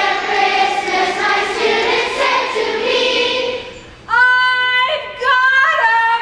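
A group of voices singing a song together, followed about four seconds in by a single clear voice singing long held notes that step upward.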